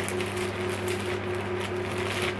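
Plastic mailer bag rustling and crinkling as it is handled and pulled open, over a steady low hum.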